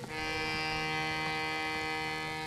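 Harmonium sounding one held chord: it starts suddenly and then holds steady, several reed notes at once.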